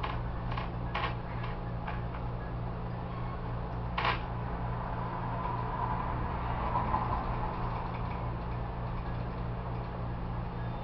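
A steady low mechanical hum, with a few scattered clicks of laptop keys being pressed in the first two seconds and one sharper click about four seconds in.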